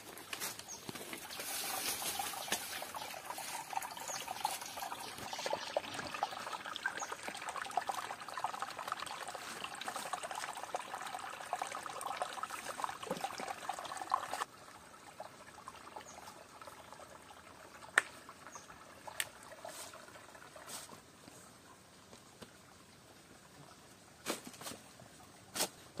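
Water trickling over stones, fairly steady for about the first half, then dropping suddenly to a quieter trickle with a few scattered small knocks.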